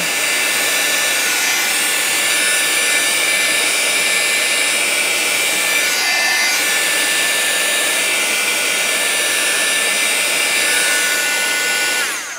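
Handheld craft heat tool running steadily, its fan blowing hot air with a steady whine over it to dry wet watercolour-marker paper; it cuts off at the very end.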